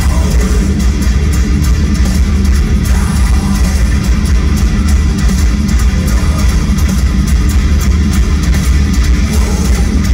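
A heavy metal band playing live in an arena, recorded from the crowd: loud, steady, bass-heavy distorted guitars and drums.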